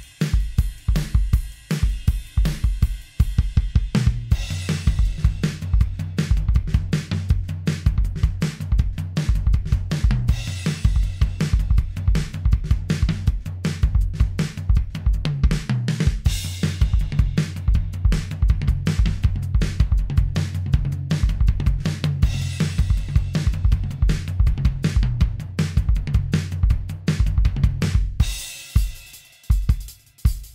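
Programmed R&B-style drum beat at 160 beats per minute in 4/4: kick, snare, hi-hat and cymbals in a steady repeating groove over a low held tone, thinning out briefly near the end.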